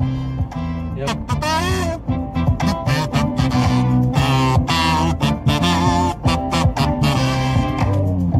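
Music: a song with a bass line and guitar under a melody that bends and glides in pitch.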